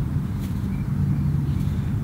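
Steady low rumble of outdoor background noise, with a low hum coming in for about a second in the middle and a faint click about half a second in.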